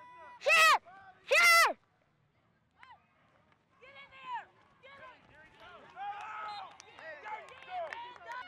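A child's voice letting out two loud shouts right at the body-worn microphone, each short and falling in pitch, about half a second and a second and a half in. After a short lull, other voices call and shout more faintly across the field.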